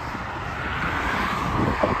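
Motorway traffic: a steady rush of tyre and engine noise from passing vehicles, growing a little louder near the end as one goes by.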